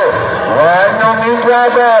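A man's voice calling out loudly in long, drawn-out sing-song phrases, amplified like an announcer over a loudspeaker.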